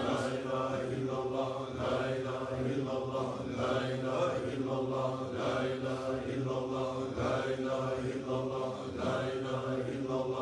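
Sufi zikr: a group of dervishes chanting a low repeated phrase of remembrance in unison, with a steady, even pulse.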